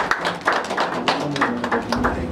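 Audience clapping: a dense, irregular patter of hand claps in the pause between the speaker's sentences.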